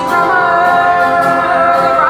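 Folk band playing live: voices singing long held notes with slow pitch slides, over acoustic guitar accompaniment.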